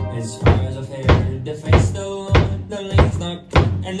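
Ukuleles strumming chords over a drum kit keeping a steady beat, with a hit about every 0.6 seconds, in an instrumental passage of a sea shanty.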